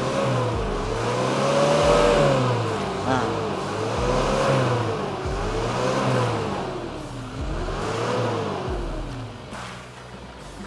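Nissan TD27T 2.7-litre four-cylinder turbodiesel revved hard from idle about four times, its note rising and falling with each blip. The tired engine puffs thick black smoke under the throttle, which could come from worn injector nozzle tips or weak nozzle spring pressure.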